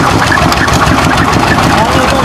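Stationary engine running steadily, driving a sugarcane crusher through a belt, with an even rapid beat.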